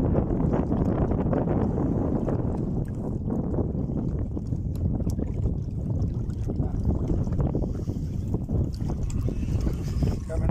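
Wind buffeting the microphone: a steady, rough low rumble that rises and falls slightly.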